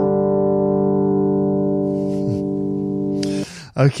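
Electronic keyboard on a Rhodes-style electric piano sound, holding one jazzy chord that rings and slowly fades before it is cut off about three and a half seconds in.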